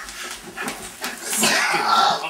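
A scuffle: clothing rustling and bodies pushing, with a person's strained, whining cries that build to their loudest in the second second.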